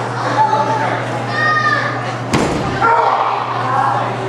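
A single hard impact on a wrestling ring, a body slamming onto the mat, a little over two seconds in, over crowd voices in a large hall. A high shout rings out just before the impact.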